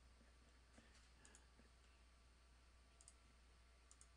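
Near silence with a few faint computer mouse clicks, two of them in quick pairs.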